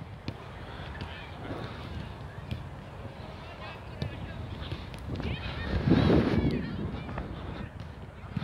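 Outdoor soccer practice: players' voices and calls carry across the field, with a few sharp thuds of balls being kicked. A louder burst of calling comes about five to six seconds in and is the loudest part.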